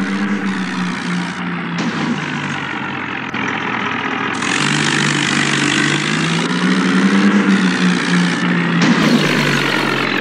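Tractor engine sound effect, running with its pitch rising and falling gently as if lightly revving. It is spliced with a few abrupt cuts.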